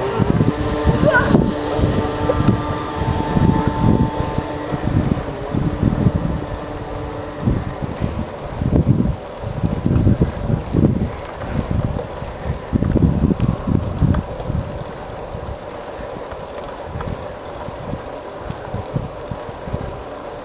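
Wind buffeting the microphone of a moving bicycle's handlebar camera in uneven low gusts, over the rumble of the ride. A steady pitched hum is mixed in during roughly the first seven seconds.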